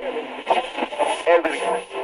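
Radio sound with static: short fragments of a voice and warbling tones through crackle, thin and narrow like a small radio speaker.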